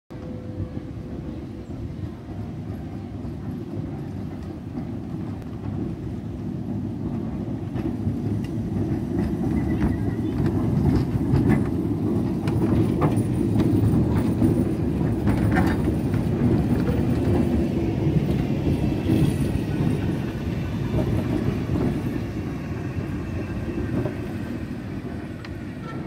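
Historic two-car tram, a motor car with a trailer, rolling slowly in reverse past at close range: a low rumble of wheels on rail that grows louder as it comes alongside, with scattered clicks from the wheels and running gear, then eases as it draws to a stop.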